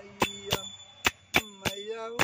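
Small hand cymbals (manjira) struck in a steady rhythm, about three sharp ringing strikes a second, accompanying a male voice singing a bhajan. He holds a long sung note, breaks off for under a second in the middle, and then comes back in.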